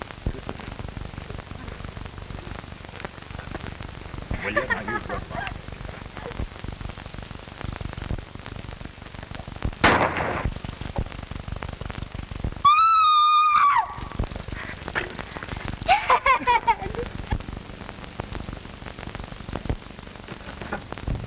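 A single gunshot about halfway through, over an old film soundtrack's constant crackle and hiss. A few seconds later comes a loud, high held tone lasting about a second. Wavering, pitch-bending calls come before and after.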